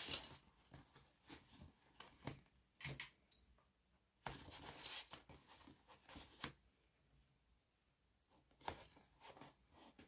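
Faint, scattered rustling of fabric and soft clicks as a lined fabric bag is handled and plastic sewing clips are pushed onto its top edge, with a longer rustle about four seconds in.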